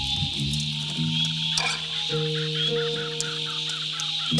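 A band plays a slow instrumental stretch of a rock song: long held low notes step to a new pitch every second or so. A steady, high-pitched chorus of calling animals runs in the background.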